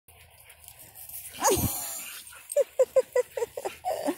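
Dogs barking while playing: one loud bark that falls in pitch about a second and a half in, then a quick run of short barks in the last second and a half.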